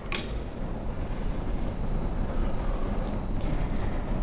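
Low steady rumble picked up by the lectern microphone, with a sharp click near the start and a fainter one about three seconds in, as equipment on the lectern is handled.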